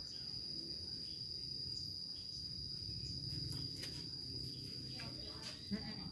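Insects singing in one steady high-pitched drone over a low background rumble, with a short knock near the end.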